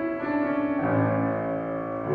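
Grand piano being played, with held notes ringing and a new chord over a deep bass note struck just before a second in.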